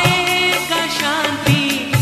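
Music of a Hindi Christian devotional song: a bending, wavering melody line over a drum beat, with drum hits about a second and a half apart.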